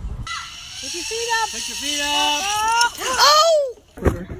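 A person's wordless, drawn-out vocal cries that hold and step between pitches, ending in louder rising-and-falling shouts near the end, over a steady hiss.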